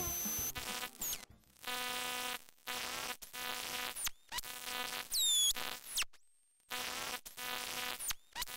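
Electronic TV-glitch sound effect: a harsh buzz that keeps cutting in and out in short stretches, with high whistling tones sliding downward several times and a brief steady high whine a little after six seconds in.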